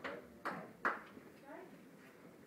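Brief fragments of voices in a large room, with a few short sharp sounds in the first second: three quick hits spaced about half a second apart.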